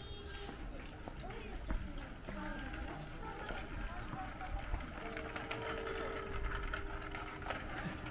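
Street ambience: indistinct voices of passers-by talking, with footsteps on the pavement.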